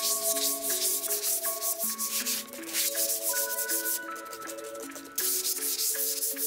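A flat-bladed hand trowel scraping cement slurry across the top of a cast concrete slab in quick, repeated strokes. It eases off midway and picks up again near the end, over background music.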